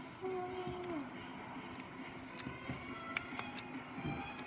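Faint sound from the small speaker of a LEGO Star Wars Darth Vader alarm clock: a held tone that drops in pitch about a second in, then fainter scattered tones and small clicks as its buttons are pressed.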